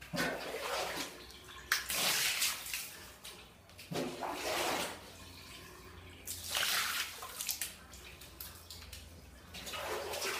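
Water thrown from a plastic basin splashing onto a tiled bathroom floor, in repeated bursts about every two seconds.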